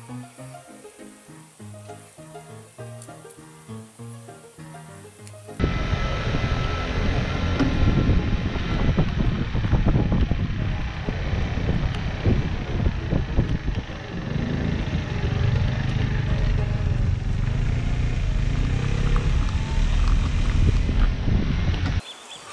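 Soft background music for the first few seconds. Then a sudden cut to the loud, steady noise of riding on a road vehicle: wind buffeting the microphone over the rumble of the vehicle's running and tyres.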